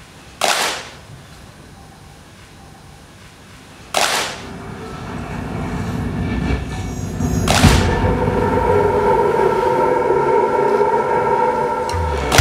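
Trailer soundtrack: three sharp, reverberant impact hits about three and a half seconds apart. A low rumble swells after the second hit, and after the third a chord of held tones sustains.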